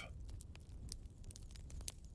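Faint crackling of a wood fire: scattered small pops and ticks over a low steady hum.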